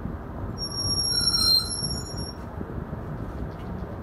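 A high-pitched squeal of several steady tones starts about half a second in and lasts about two seconds, loudest near its middle, over a steady low background noise.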